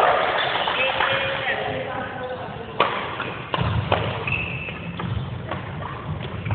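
Badminton rally: rackets striking the shuttlecock with sharp cracks, several in the second half, over voices of players.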